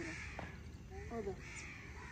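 Faint bird calls outdoors, with a short spoken word about a second in.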